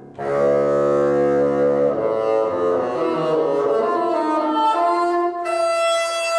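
Bassoon with piano accompaniment playing a classical piece. After a brief break the bassoon comes in loud on a sustained low note, climbs in a stepwise run of notes, and settles on a high held note near the end.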